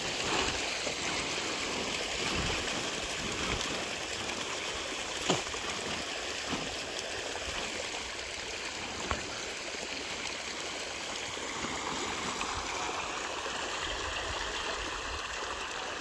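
Steady churning and splashing of water from a dense mass of fish feeding at the pond surface, with two brief knocks about five and nine seconds in.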